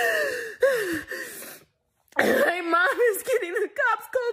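A woman sobbing and wailing: two falling, drawn-out cries in the first second or so, a sudden break, then a longer run of shaky, quavering sobs.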